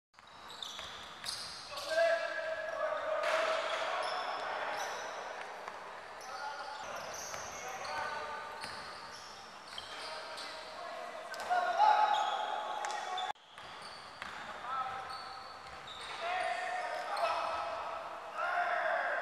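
Basketball game play on a hardwood court in a large indoor gym: sneakers squeaking sharply and repeatedly on the floor as players cut and drive, with the ball bouncing.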